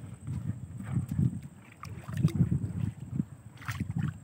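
A man moving about in a small wooden boat while paying out a rope line of crab traps: irregular low thuds and rumbles from the hull and gear, with a sharper knock near the end.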